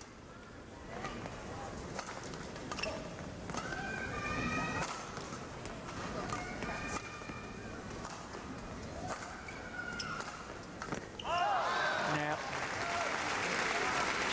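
Badminton arena crowd during a rally: voices calling out over a steady murmur, with occasional sharp racket hits on the shuttlecock. About eleven seconds in, the crowd breaks into louder applause and cheering.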